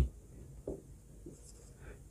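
Faint marker strokes on a whiteboard: a few short scratches of the pen tip as figures are written.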